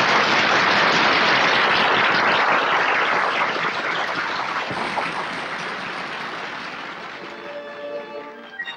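Theatre audience applauding: dense clapping that slowly fades, with orchestral music starting near the end.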